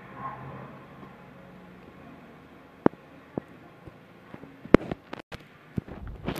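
Low, steady background room noise with a few sharp clicks about three seconds in, then a quick cluster of clicks near the end.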